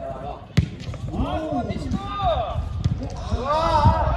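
A football struck once with a sharp thud about half a second in, followed by players shouting calls to each other across the pitch.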